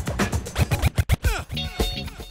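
Hip-hop beat with turntable scratching: drum hits under quick back-and-forth record scratches that sweep up and down in pitch, from about halfway through.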